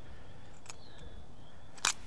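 Quiet steady background with a faint click a little after half a second and a sharper click near the end.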